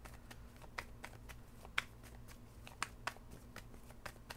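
Tarot cards being handled and shuffled: a few faint, short clicks and taps, roughly a second apart, over a low steady room hum.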